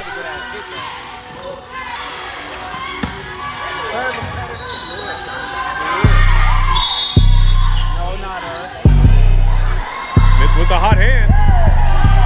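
Gymnasium game sound of players and spectators shouting and cheering, with one sharp smack of a hand striking a volleyball about three seconds in. About halfway through, loud music with heavy bass comes in over it.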